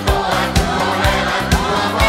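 Upbeat pop music with a steady drum beat of about two beats a second, and a group of voices singing along.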